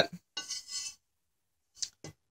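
Faint handling sounds from a metal carburetor hat held and turned in the hands: light metallic rubbing in the first second, then a single short click near the end.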